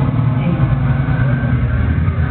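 Detroit electro played live over a club sound system, loud and steady, with heavy bass dominating.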